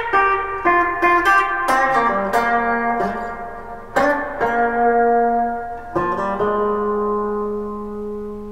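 Semi-hollow electric guitar playing the song's main riff in B flat: a run of quick picked notes, then fuller strikes about four and six seconds in that are left to ring and slowly fade.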